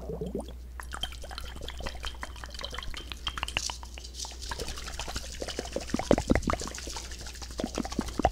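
Wet mouth sounds close to a binaural microphone: rapid small clicks and smacks, getting louder and sharper near the end.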